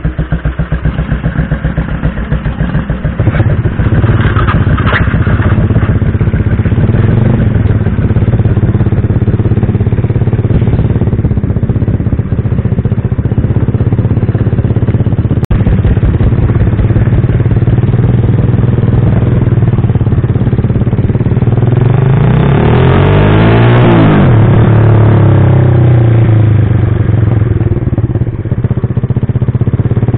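Yamaha Jupiter Z motorcycle's single-cylinder four-stroke engine idling with an even pulse, then pulling away about three seconds in and running steadily and louder while under way. Around the last third the engine pitch climbs and falls, with a second engine's pitch crossing it, as of another motorcycle passing close.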